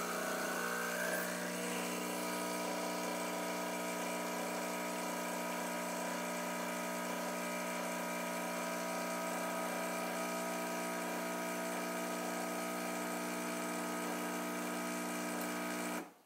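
Capresso EC Pro espresso machine's pump running steadily while it pulls an espresso shot, an even buzzing hum that does not change.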